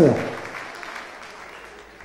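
Audience applauding in a hall, fading steadily away.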